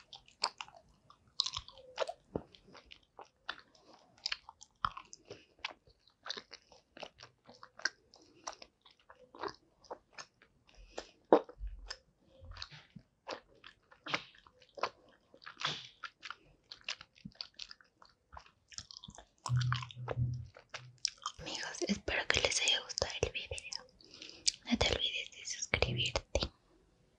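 Close-miked chewing of gummy candy: scattered soft, wet mouth clicks and smacks, with a louder, denser stretch of sound in the last five seconds.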